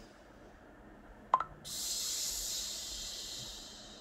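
A woman's long, hissing exhale of a deep breathing exercise, starting about a second and a half in and slowly fading out, just after a short click.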